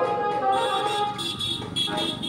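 A vehicle horn sounding for about a second, amid street noise.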